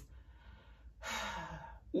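A woman's breathing: a faint breath, then an audible breathy sigh from about a second in, in a pause in her speech.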